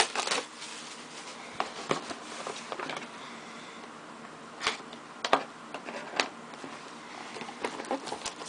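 Hands handling and opening a cardboard trading-card hobby box: a low rustling with scattered sharp clicks and taps as the box is turned and its lid is worked open.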